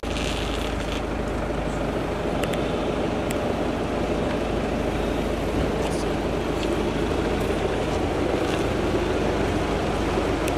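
A car engine idling with a steady low rumble, joined by a few faint, scattered clicks.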